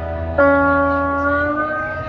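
Live alt-country band playing, with acoustic guitar; a new chord comes in about half a second in and rings on, its pitch rising slightly near the end.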